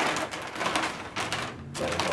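Wrapping paper and gift packaging rustling and crinkling in a run of short, irregular rustles as a present is unwrapped.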